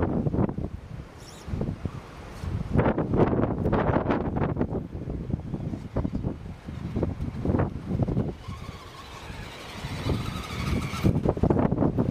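Wind buffeting the microphone in irregular gusts. From about eight and a half seconds in, and for a few seconds, a faint steady whine runs underneath: the electric motor of a radio-controlled scale rock crawler.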